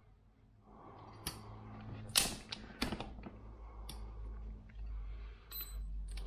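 Light clicks and knocks of small metal tools and rifle trigger parts being handled on a workbench, half a dozen scattered sharp taps, with a brief high metallic ting near the end.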